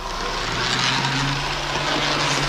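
Toy electric train running along its track: a steady whirring rumble with a low hum, swelling in at the start.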